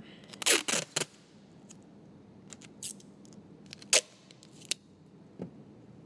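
Tyvek tape strips being cut with a blade and torn from the roll: a handful of short, sharp rips and snips scattered through the few seconds, the loudest about a second in and near four seconds.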